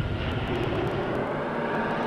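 A sustained rushing whoosh sound effect with faint held tones under it, accompanying an animated logo that bursts out of water.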